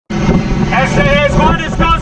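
A man shouting over the steady rumble of a fast-moving boat's engine, with wind and spray rushing past. The shouting starts under a second in.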